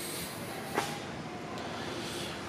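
Steady low hiss of background room noise, with a single faint tap a little under a second in.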